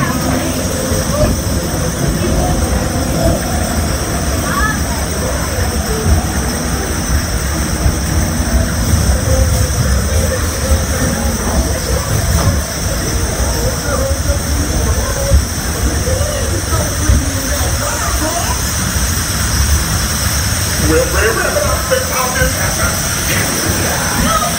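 Log flume chain lift hauling a loaded log boat up a steep lift hill: a steady low rumble with a fast rattle underneath.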